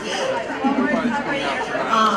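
Voices talking and chattering in a large room, with no music.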